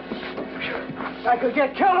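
Scuffling of men wrestling on a floor, bodies and feet shuffling, over background music with a held note; a man's raised voice breaks in near the end.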